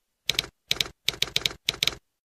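Typing sound effect: sharp keystroke clicks in short runs of two to four, stopping abruptly at the end.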